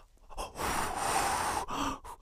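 A drawn-out breathy gasp, an intake of breath lasting about a second, from a costumed character reacting in surprise.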